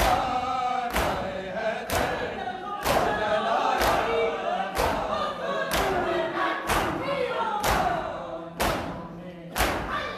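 A crowd of men beating their bare chests in unison (matam), a sharp strike about once a second. Between the strikes, a group of men's voices chants a noha.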